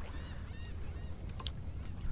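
Faint, distant birds calling in short rising-and-falling notes over a low steady rumble of wind and water, with one sharp click about one and a half seconds in.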